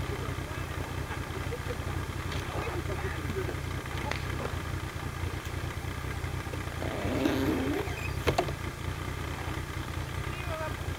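Snowmobile engine idling steadily, with quiet voices early on and a couple of sharp knocks about eight seconds in.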